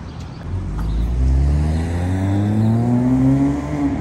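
A car engine accelerating on the street. It rises steadily in pitch for about three seconds from half a second in, then falls away near the end.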